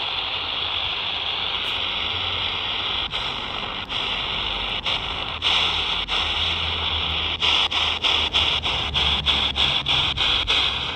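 Modified Quansheng UV-K6 handheld radio's speaker hissing with static on an empty channel in the 27–29 MHz CB band, picking up no signal. The hiss is broken by short dropouts as the frequency is stepped, coming about three a second in the last few seconds.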